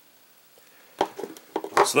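Near silence, then a sharp click about a second in and a few faint ticks as two knives are handled and one is set aside; a man starts speaking just before the end.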